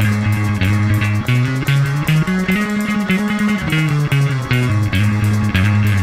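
Electric bass guitar playing a fast line of separate plucked notes that step up and down in pitch, each with a bright, sharp attack.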